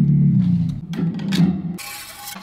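The thick single string of an electric shovel guitar, plugged through guitar pedals into an amp, ringing a low note that fades away while hands handle the string to restring it. Near the end, a quieter scratchy rubbing of fingers working the string at the shovel blade.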